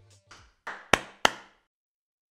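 A short series of sharp knocks: a faint one, then three clearer hits about a third of a second apart, the last two the loudest, each with a short fading tail.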